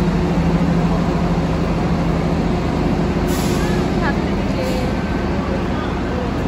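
Tri-Rail double-decker commuter train standing at the platform, its engine giving a steady low drone. A sudden hiss of air starts a little past halfway through.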